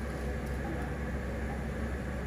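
Steady low hum of operating-room equipment with an even hiss over it.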